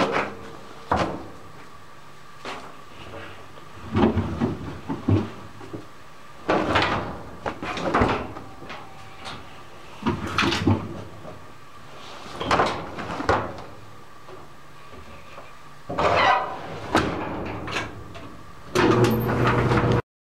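Knocks and rustles of laundry and doll stuffing being handled in an open clothes dryer drum, coming in clusters every couple of seconds, over a steady faint hum.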